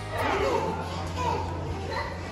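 A young child's voice chattering, with other indistinct talk, over a low steady hum.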